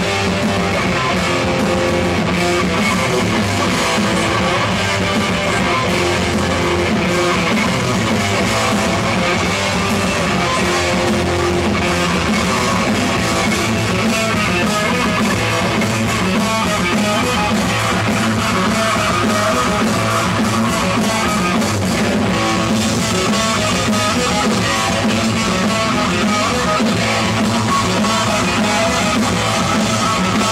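Heavy metal band playing live, with electric guitars and a drum kit, loud and unbroken throughout.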